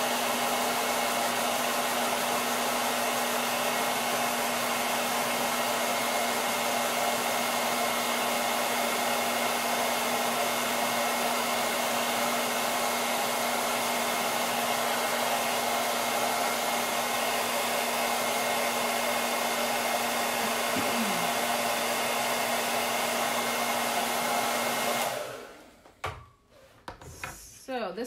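Handheld hair dryer blowing steadily with a constant motor hum, switched off about three seconds before the end.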